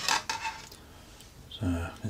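Brief fragments of a man's voice, with a quiet gap of about a second between them; little else is heard.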